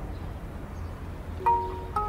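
A phone alarm chiming: a low hum, then two bell-like notes, the first about one and a half seconds in and the second at the end.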